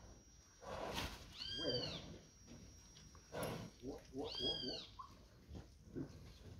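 A Nelore heifer calls out twice, two short calls about three seconds apart, each rising and then falling in pitch.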